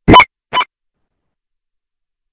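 Two short, loud electronic blips about half a second apart, the first louder, on a remote caller's phone line in a video-conference feed as the line drops out.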